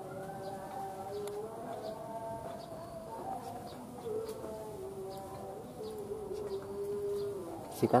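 A steady background of held tones that steps up or down in pitch a few times. Near the end comes a single sharp gunshot, the shot that hits the monitor lizard.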